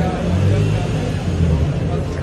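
Nissan 350Z's V6 engine and exhaust giving a low, uneven rumble as the car creeps past at walking pace, heard in an underground car park with crowd chatter around it.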